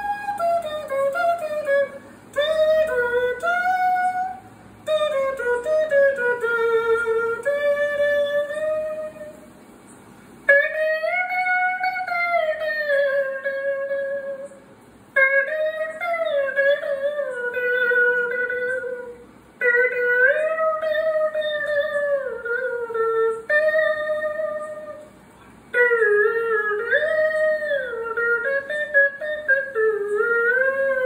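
A high solo voice singing a melodic song in phrases with bending, ornamented pitch, pausing briefly between phrases, over faint accompaniment.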